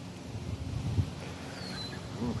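Footsteps and phone-handling noise as someone walks on dry dirt and pine needles, with soft uneven knocks and a small click about a second in. A faint high whistle falls in pitch near the end.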